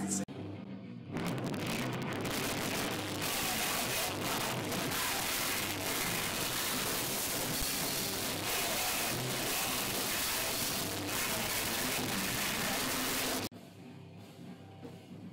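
Live metal band playing at full volume in a small pub, heard as a dense, loud wall of sound. It comes in about a second in and cuts off abruptly near the end.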